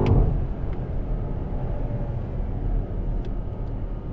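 Low, steady rumble inside the cabin of a BMW X5 M Competition at expressway speed: its 4.4-litre twin-turbo V8 running in M mode, mixed with road noise. A sharp click right at the start.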